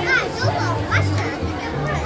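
Background music with a bass line playing under the chatter of a crowd, with children's voices among it.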